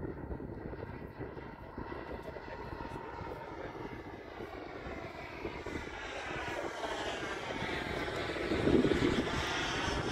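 Small gas-turbine engine of a radio-controlled BAE Hawk model jet whining as the jet flies past overhead, growing louder toward a close pass near the end.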